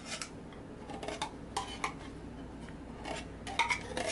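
A metal spoon scraping the last of the sweetened condensed milk out of a tin can into a glass bowl: a scattered series of light clinks and scrapes of metal on the can.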